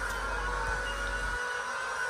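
Handheld electric wood planers running, shaving the surface of large round timber columns: a steady high motor whine over the rasp of the cutting.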